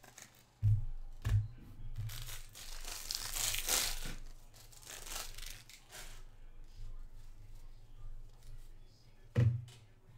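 The foil wrapper of a baseball-card jumbo pack being torn open, a ripping crinkle from about two and a half to four seconds in, amid knocks and rustling as the pack and cards are handled. A sharper thump comes near the end.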